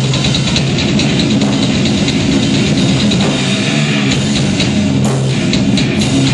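Hardcore metal band playing live: electric guitars over fast, steady drums and cymbals, loud and continuous.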